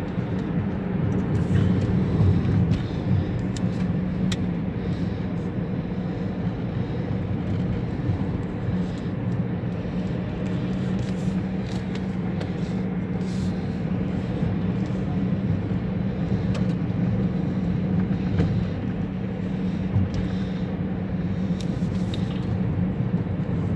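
A car driving at low speed, heard from inside the cabin: a steady engine hum with tyre and road noise, and a few light clicks.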